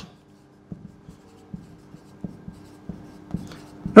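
Marker pen writing on a whiteboard: a run of short, faint strokes as letters are written, over a faint steady hum.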